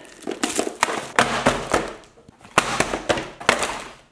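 Plastic wrap crinkling and a cardboard box of trading-card packs and small items being handled and tipped out, the contents clattering onto a wooden tabletop in two bursts of rustling with sharp knocks.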